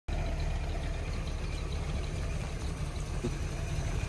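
A car engine idling, a low steady sound with no change in speed.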